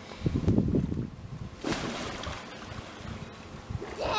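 A splash as a child jumps into a swimming pool wearing an inflatable ring, about a second and a half in, fading into water sloshing. Before it there is a low rumble.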